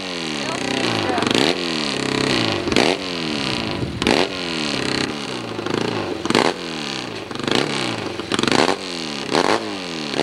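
Hillclimb motorcycle engine blipped on the throttle while the bike stands at the start, about eight sharp revs, each falling away in pitch before the next.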